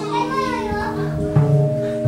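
Improvised ensemble music. A steady ringing crystal singing bowl tone holds throughout, and a wavering, gliding high voice-like sound runs through the first second. Low double bass notes come in about a second and a half in.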